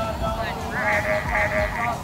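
A woman's voice making a drawn-out, wavering wordless sound through the second half, over background music.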